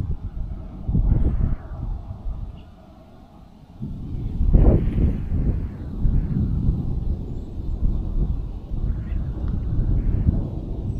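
Wind buffeting the camera microphone, a gusty low rumble that drops away for about a second a little after the start, then rises again.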